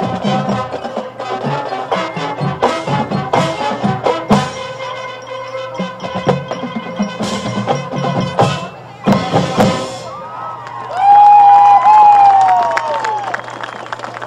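A marching band playing, led by its percussion: drums and mallet keyboards strike a fast rhythm over a few held notes. After about ten seconds the rhythm breaks off, and a loud, wavering high tone takes over, arching and then sliding down near the end.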